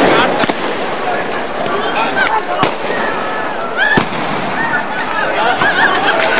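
Sharp bangs of police firing in a street clash, about four reports spaced a second or two apart, over a continuous din of men shouting.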